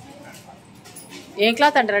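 A loud, short vocal call that wavers up and down in pitch, starting about one and a half seconds in, after a quiet stretch.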